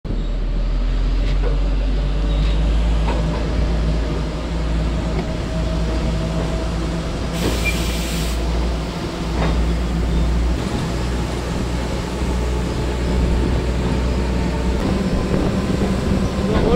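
Steady running rumble of a moving train, heard from on board, with a brief hiss a little under halfway through.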